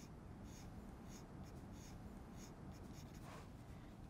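Graphite lead of a metal lead holder scratching on drawing paper in short, faint strokes about twice a second, as shading lines are hatched.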